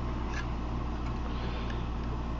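Steady low room hum, with two faint clicks of plastic bricks as a brick-built model spaceship is handled.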